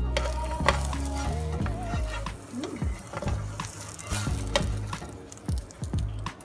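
Food sizzling as it fries in a pan, a steady hiss with scattered clicks from a utensil against the pan, over background music.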